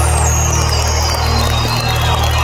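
A live rock band holding a final sustained chord, with a deep, steady bass drone underneath. A high tone slides downward through the first second.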